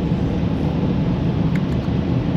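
Automatic car wash machinery running, heard from inside the car's cabin as a steady rushing noise.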